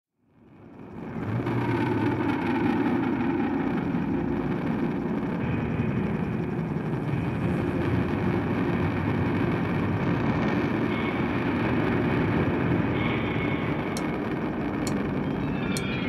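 Steady, dense rumbling noise that fades in over the first second or so, with a few faint sharp clicks near the end: the ambient, sound-collage opening of a spiritual-jazz track rather than played instruments.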